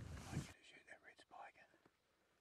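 A burst of rustling noise close to the microphone that cuts off about half a second in, followed by a faint whispered voice.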